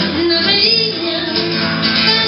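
Live rock song: a woman singing into a microphone while strumming a guitar.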